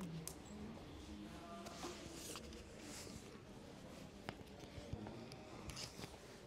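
Faint murmur of distant voices, with a few sharp clicks scattered through it.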